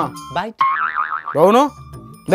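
Cartoon-style comedy sound effects: springy pitch swoops that rise and fall, and a warbling wobble in the middle, over background music.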